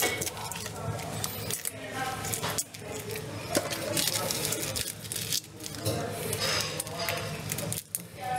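Low voices talking, with light clinks and taps of a utensil against a bowl.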